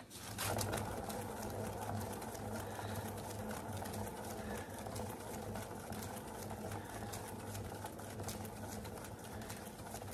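Motorised paint spinner starting up just after the beginning, then running steadily with an even whirr as it spins a poured canvas on its turntable.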